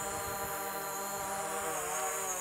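Camera drone's motors and propellers buzzing at a steady, even pitch.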